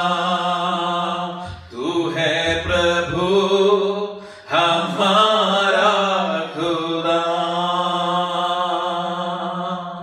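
Male voices singing a slow worship song through microphones in long, gliding phrases over a steady held low note, with brief breaks between phrases.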